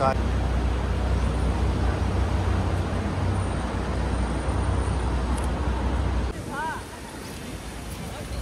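City street traffic noise: a steady low rumble of passing cars and vans. It cuts off abruptly about six seconds in, and a voice is briefly heard after it.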